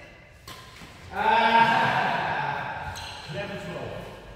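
A racket hit on the shuttlecock about half a second in, then a player's long wordless vocal cry lasting about two seconds, with a shorter voiced sound after it.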